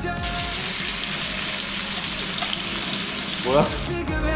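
Pork belly sizzling as it fries in a pan, a steady hiss. A brief rising tone cuts in near the end.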